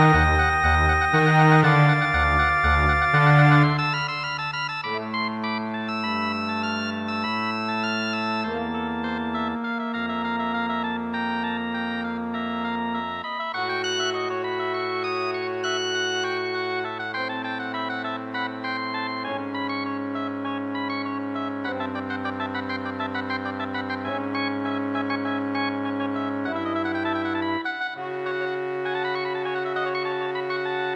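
Wind orchestra playing: loud, repeated low accents for the first few seconds, then quieter sustained chords that shift every second or two.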